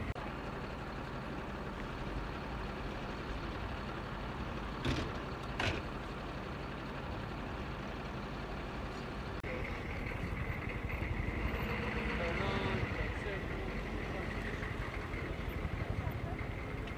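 Outdoor ambience: a steady low rumble with faint voices talking, and two brief knocks about five seconds in.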